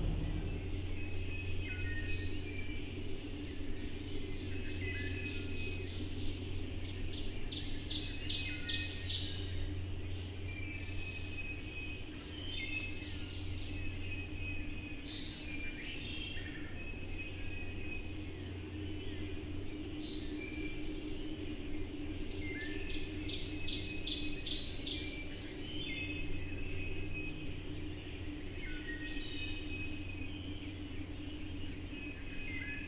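Songbirds singing in woodland: many short whistled phrases throughout, with two longer, buzzier songs at about 8 and 24 seconds. A steady low hum runs underneath.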